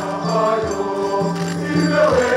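Choir singing a slow hymn in held notes over a steady low bass line.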